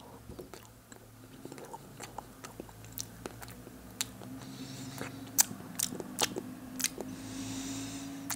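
Quiet close-up chewing of a mouthful of frozen ice cream mixed with waffle cone pieces, with many small irregular crunchy clicks, a few louder ones in the second half.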